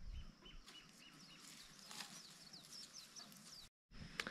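Faint bird calls: a few short chirps, then a run of quick, high, downward-sweeping notes.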